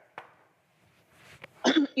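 A short pause holding only faint breath-like noise and a small click, then a woman begins speaking near the end.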